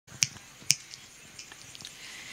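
Two sharp clicks about half a second apart, followed by a few much fainter ticks over low background noise.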